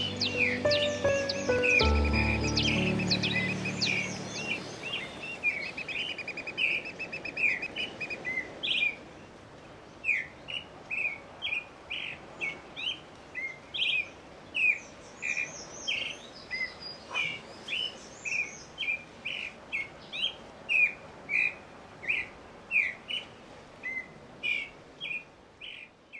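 Background music fading out over the first few seconds under birdsong. Then birds keep calling: a series of short, sharp call notes repeated about twice a second, with fainter, higher chirps over them.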